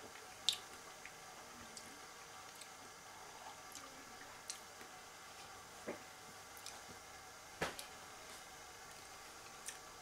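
Faint wet mouth and lip smacks of a man tasting a sip of lager: a few scattered soft clicks over low room tone, the sharpest about half a second in and another near the end.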